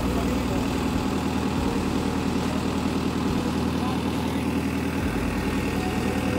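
A ferry boat's engine running steadily under way, a low, even drone with a fast pulsing beat.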